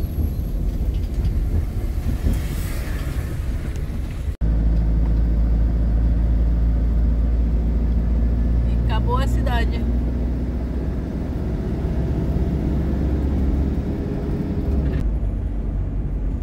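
Motorhome driving on the road, heard from inside the cab: a steady low engine drone and road rumble. After a short dropout at about four seconds, the drone comes back louder and steadier.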